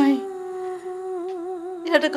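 Background score: one long held humming note with faint overtones, wavering slightly in pitch in the second half.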